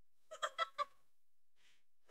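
A chicken clucking: four quick clucks in a row, a short burst lasting about half a second.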